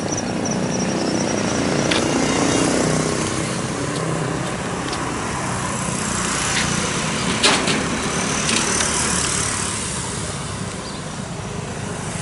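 Street traffic: a car's engine running as it drives past close by, over steady outdoor noise, with a few sharp clicks, the loudest about seven and a half seconds in.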